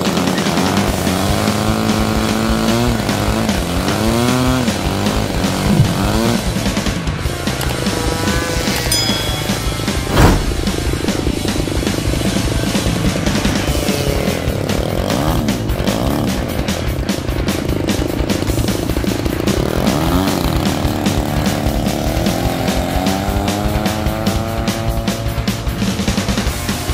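Model-aircraft engine of an RC P-51 Mustang running on the ground, its pitch rising and falling several times as it is revved. Background music plays over it, and a sharp knock comes about ten seconds in.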